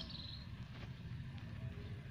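Quiet outdoor morning ambience: a steady low rumble, with a short high chirp at the very start and faint scattered small-bird chirps.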